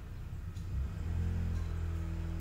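A steady low hum and rumble with no speech, its energy sitting almost entirely in the bass, with a few faint steady tones joining about two-thirds of a second in.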